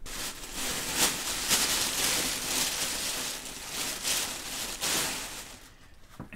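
Plastic bag rustling and crinkling as items are rummaged out of it, in several louder swells, dying down near the end.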